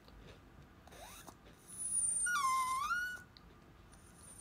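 A pet's single drawn-out cry, a little over a second long, dipping in pitch and rising back, which sounds like begging for the snack being eaten.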